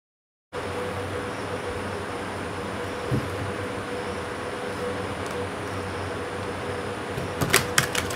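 A deck of tarot cards being shuffled by hand over a steady background hiss and hum, starting about half a second in. One sharp snap about three seconds in and a quick run of sharp snaps near the end as the cards are bent and released.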